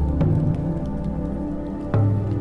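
Slow shamanic drum music: deep drum strikes, one just after the start and another near the end, each ringing on low. A fire crackles with small sharp clicks over it.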